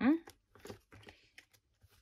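A brief rising "mm-hmm" hum at the start. After it come soft, scattered rustles and light clicks of paper cash envelopes and banknotes being handled and turned in a ring binder.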